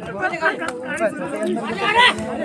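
Crowd of onlookers talking over one another and calling out, many overlapping voices, with one louder shout near the end.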